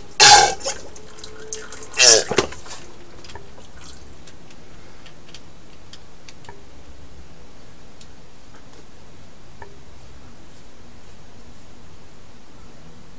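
Synthetic 75W-90 gear oil squeezed from a plastic quart bottle into a GM 14-bolt rear axle's fill hole: two short, loud gurgling squirts in the first few seconds, then only faint scattered clicks.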